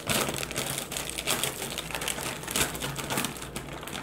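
Plastic Flamin' Hot Cheetos chip bag crinkling as it is handled, a dense run of quick crackles.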